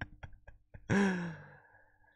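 A man's voiced sigh, a breathy "haah" falling in pitch, about a second in, preceded by a few faint clicks.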